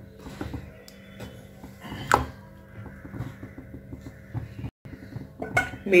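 Occasional light clinks of a utensil against a metal kadai while chicken curry simmers, with one sharper clink about two seconds in.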